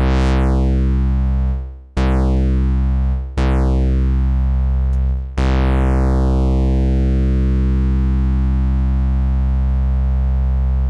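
A low synthesizer bass note from a Eurorack modular, played through a Doepfer A-106-6 XP filter in notch mode. The note is struck four times on the same pitch, about 2, 3.5 and 5.5 seconds in after one already sounding. After each strike an envelope sweeps the notch down through the harmonics, giving a falling, hollow phasing tone. The last sweep is slower, over about five seconds, and the note holds to the end.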